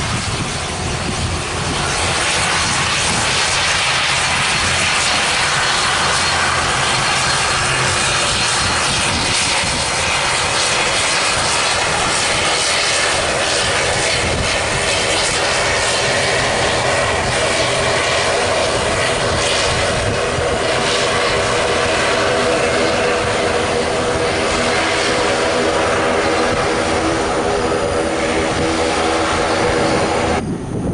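Batik Air ATR 72-600's twin turboprop engines and propellers running steadily as the aircraft rolls along the runway, a loud, even hum with a propeller drone that grows stronger in the second half.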